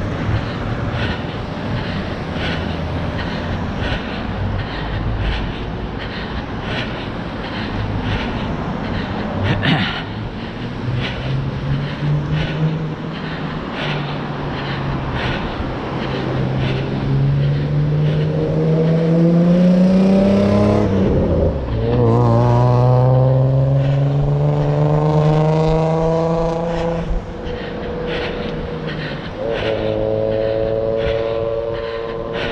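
Running footsteps on pavement, about two a second, over a low rumble of wind on the microphone. From about a third of the way in, a motor vehicle's engine revs up through the gears on the road alongside: its pitch climbs slowly, drops at a gear change about two-thirds through, then climbs again.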